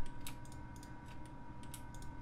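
Scattered light clicks of a computer keyboard and mouse, irregular and about a dozen in two seconds, over a faint steady electrical tone.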